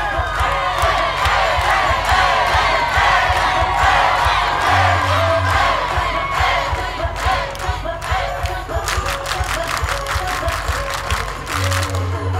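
Dance-mix music with a heavy bass beat playing over loudspeakers, with a crowd screaming and cheering over it. Near the end comes a quick run of sharp percussive hits.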